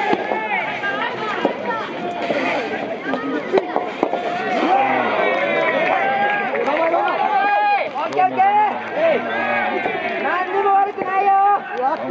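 Many voices shouting and calling over one another without pause, cheering from the sidelines and player calls during a soft tennis doubles rally. A few sharp knocks stand out among them, rackets striking the rubber ball.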